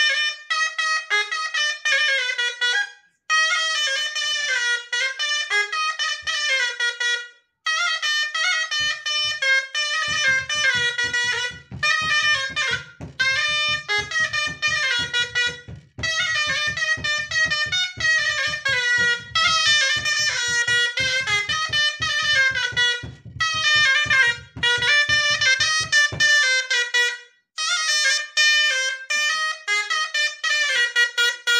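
A Moroccan ghaita, a wooden double-reed shawm with a flared metal bell, plays a chaabi melody with wavering, ornamented notes, in phrases separated by short breaks. Through the middle stretch a fainter low pulsing sound runs underneath.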